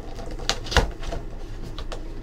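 Hands opening a cardboard trading-card box: its tape seal is broken and the lid lifted, making a few short clicks and taps of cardboard, the loudest just under a second in.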